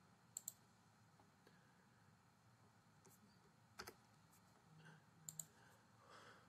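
Near silence broken by a few soft computer mouse and keyboard clicks while a spreadsheet formula is entered: a quick pair about half a second in, a single click near four seconds, and two more near the end.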